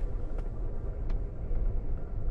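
Amtrak passenger train running at speed, heard from inside the car: a steady low rumble, with two faint clicks in the first second or so.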